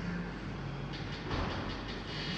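Coffee-shop background sound: a steady hum and noisy bed with a quick run of clicks and clatter from about halfway through, loudest just past the middle.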